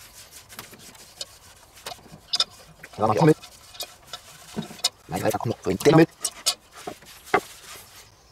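Sponge rubbing and scraping around the inside of a cast-iron Dutch oven, spreading care paste over the iron, with short light scrapes throughout. A few brief spoken words are louder than the rubbing.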